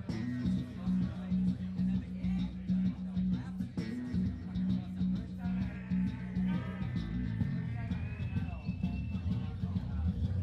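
Live rock band playing: a single low note pulses over and over in a driving repeated pattern, and from about halfway in a lap steel guitar's slide tones come in and glide upward toward the end.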